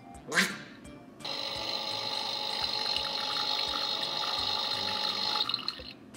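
Toy espresso machine playing its brewing sound: a short sound as it is switched on, then a steady, water-like pouring noise with a few held tones for about four seconds, which cuts off suddenly near the end.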